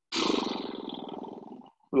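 A person's loud, rasping vocal exhale under effort, starting suddenly and fading out over about a second and a half.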